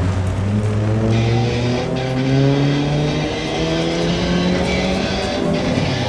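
Amplified electric guitar and bass sending out several overlapping pitched tones that slowly slide upward in pitch, a rising build-up that leads into a fast rock song.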